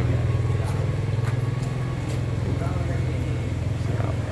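A small engine running steadily at idle, a low even rumble, with faint voices in the background.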